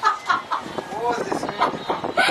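A woman laughing hard and wildly: a run of quick, high cackles, then longer laughs that swoop up and down in pitch.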